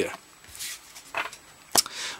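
Pokémon trading cards being handled and set down on a tabletop: a soft rustle, then one sharp tap near the end.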